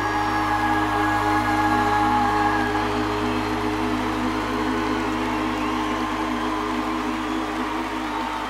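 Band holding the final sustained chord of a live song, with a long held vocal note that ends about three seconds in, while the arena audience cheers and applauds.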